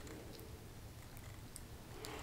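Very quiet: a low steady room hum with a few faint soft ticks as a creamy satin lipstick is swiped across the lips.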